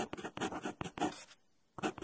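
Marker pen writing on a board in quick, short strokes. It pauses briefly near the end, then starts writing again.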